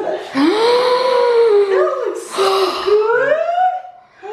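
A woman's long, breathy gasps of delight, two drawn-out "ohhh" sounds: the first rises and is held for about two seconds, the second dips and then climbs in pitch.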